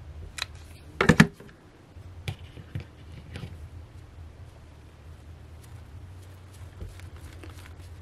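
Handling clicks and knocks, the loudest a short cluster about a second in as a hot glue gun is put down, then a few lighter clicks while a glued stem of artificial greenery is pressed into place, over a low steady hum.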